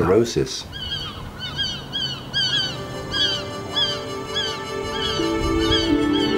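Gulls calling over and over, short rising-and-falling cries a few times a second, with soft sustained music entering about halfway through.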